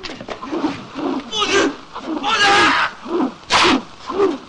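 Fight-scene vocal effects: a string of short grunts and shouts, with three louder, harsh yells about a second apart.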